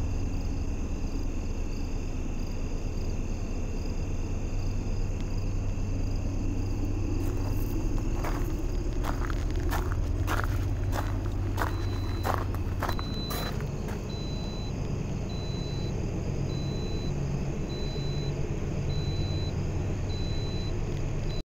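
A train high up the mountain slope, heard as a steady low rumble. A run of short sharp clicks comes in the middle.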